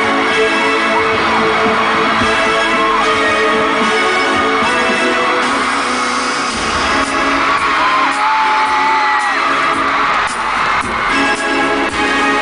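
Concert intro music playing loudly through an arena sound system, with fans screaming in long, high-pitched wails over it, most of all in the second half.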